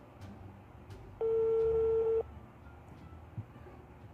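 A single steady telephone line tone, about a second long, played through a handheld phone's speaker.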